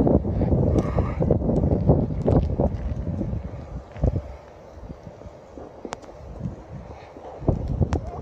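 Wind buffeting the microphone as a low rumble, heaviest for the first few seconds and then easing, with scattered sharp clicks and taps.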